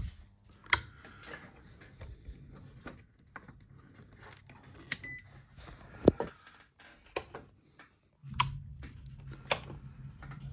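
Scattered clicks and knocks of knobs, switches and test leads being handled on a bench power supply, one sharper knock about six seconds in. A short beep sounds about halfway through, and a low steady hum comes in near the end.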